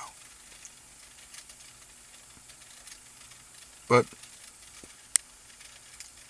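A pause in speech filled by faint, steady recording hiss, broken by one spoken word about four seconds in and a single sharp click about a second later.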